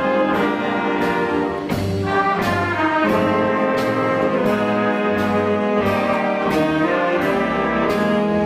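School jazz band playing: trumpets, trombones, saxophones and flutes holding chords together over drums keeping a steady beat.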